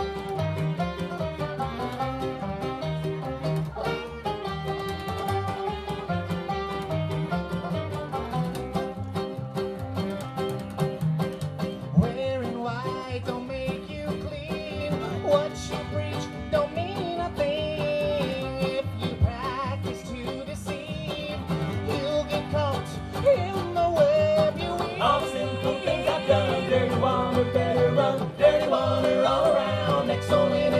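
Bluegrass band playing live: banjo, fiddle, clarinet, mandolin, acoustic guitar and upright bass. In the second half a wavering lead line stands out over the picking.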